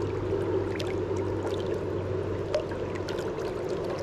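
Steady rush of river water flowing over a shallow, rippling run, with a steady low hum underneath.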